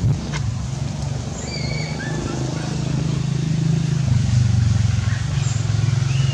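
Steady low drone of an engine running, with a few brief bird chirps.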